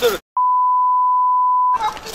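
A single steady electronic beep, a pure tone about a second and a half long, with all other sound muted beneath it: a censor bleep dubbed over speech, with talking just before and after.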